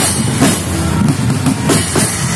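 A marching bucket drum band, plastic buckets and marching bass drums beaten with mallets, playing a continuous dense rhythm. Hand cymbals crash twice, about half a second in and near the end.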